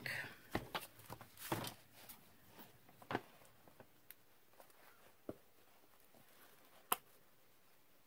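An old hardcover book set down and opened, with knocks and page handling in the first two seconds. Then a few separate sharp clicks as a pointed tool pokes a hole through a small paper circle laid on the book, the loudest near the end.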